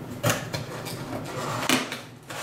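Cardboard box and its packing handled by hand: rustling and scraping, with two louder scrapes, one just after the start and one near the end.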